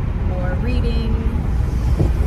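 Steady road and engine rumble inside the cabin of a moving car, heavy in the low end, with wind noise on the microphone.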